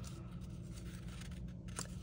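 Faint rustle of cardstock paper being pressed and wrapped by hand, with a soft click near the end, over a steady low hum.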